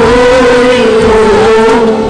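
Sung liturgical chant of the Syriac Orthodox Qurbana: a long held note with a steady lower note beneath it, breaking off briefly near the end.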